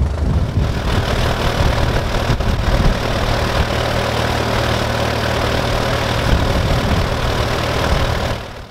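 1940 Allis-Chalmers WC tractor engine running steadily. A steady rushing noise joins it about a second in.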